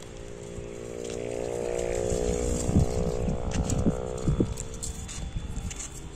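A motor's steady hum swells over a couple of seconds and then fades, holding one pitch throughout. A few short knocks and bumps sound in the middle.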